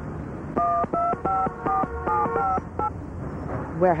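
Touch-tone keypad beeps of a phone being dialed: about ten short two-tone beeps in quick, even succession over roughly two seconds.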